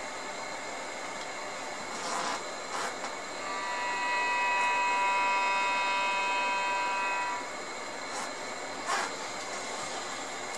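A steady hiss with a few light knocks. About three and a half seconds in, a sustained pitched tone with many overtones swells up, holds for about four seconds and fades away.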